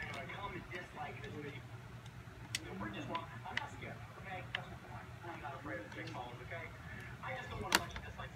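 Faint, indistinct voice over a steady low hum, with a few sharp clicks; the loudest click comes near the end.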